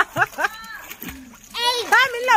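Pool water splashing lightly under children's voices, which are the loudest sound; a high voice rises near the end.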